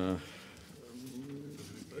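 A man's voice in speech: a drawn-out hesitation sound ("э") at the start, then a faint, low hum with gently wavering pitch before the words resume.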